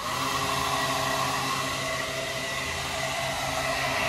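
Two inline duct blower fans running steadily, a broad whir over a low motor hum, cooling a car audio amplifier that is hot from hard playing.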